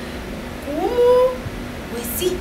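A woman's single drawn-out rising vocal exclamation, like a questioning or indignant 'aah?', starting just under a second in and held briefly at the top.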